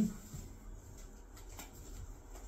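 A few faint, light taps and shuffles in a quiet room, from two people moving through a slow rattan-stick drill.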